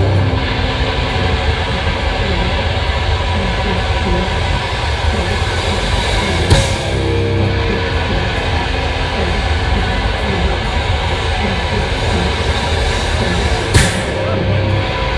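Live extreme metal band playing a sustained, droning wall of distorted guitar noise, with two loud hits, one about halfway through and one near the end.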